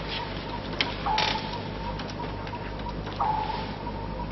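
Submarine interior sound effects: a steady low hum, with a sonar-like ping that sounds about every two seconds and fades each time. A few clicks and creaks sit under it.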